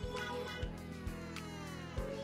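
Background music with a steady beat of low thumps about twice a second under sustained pitched notes, with a long falling gliding tone in the second half.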